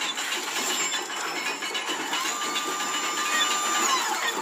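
Sound effects of a fanciful gear-driven machine at work: mechanical whirring with many small rattles and clicks, joined about two seconds in by a rising whistle that holds steady and drops away near the end.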